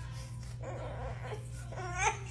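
Infant whimpering and fussing, with a short pitched cry starting near the end.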